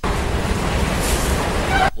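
Subway train running, heard from inside the passenger car as a steady, deep rumble.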